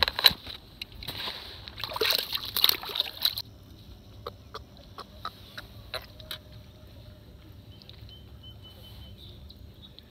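A hooked bullhead catfish splashing at the water's surface for about two seconds as it is lifted out. A few light clicks of handling follow.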